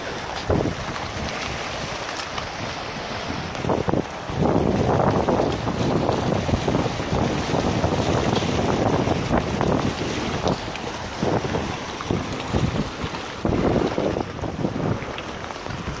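Turbulent water rushing through the tailwater below a dam, with wind buffeting the microphone in uneven gusts, strongest from about four to ten seconds in and again near the end.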